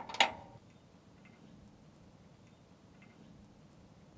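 A single sharp metallic clink just after the start as a steel drawbar pin is handled against the trailer's steel drawbar bracket, then near quiet with a few faint ticks.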